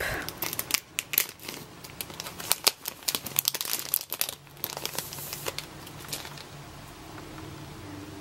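Plastic packaging being crinkled and torn open by hand: a dense run of sharp crackles that dies away about five and a half seconds in.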